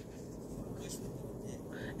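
Quiet pause: a low, steady room hum with a few faint, soft rustles.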